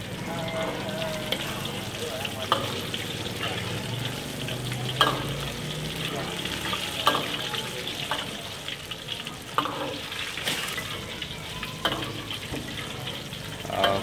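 Teochew spring rolls of shrimp paste in tofu skin deep-frying in a wok of hot oil: a steady bubbling sizzle. A metal ladle clinks against the wok a handful of times as it stirs.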